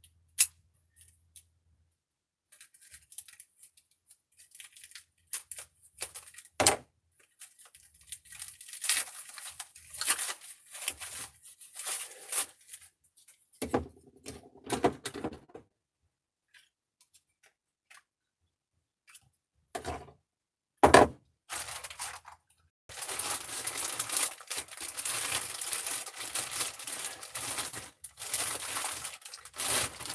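Loose parts of a desk-mount monitor arm being handled on a table: scattered sharp clicks and knocks of metal pieces, with short rustles in between. Near the end comes a long, steady crinkling of a plastic bag.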